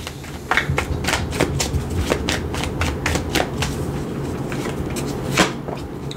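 A deck of tarot cards being shuffled in the hands, with cards laid out on a cloth: an irregular run of short flicks and snaps, the loudest about five and a half seconds in.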